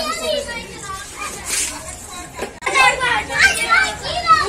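Children playing: excited, unworded voices and shouts of a small child and adults.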